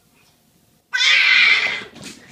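A domestic cat's loud cry, beginning suddenly about halfway in and lasting under a second before fading.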